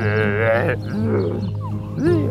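A person making a drawn-out wordless vocal noise that wavers in pitch, followed by a shorter one about a second in, over background music with steady low tones.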